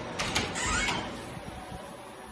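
A door being pushed open by hand: a few sharp latch clicks in the first second, with a short rising hinge creak.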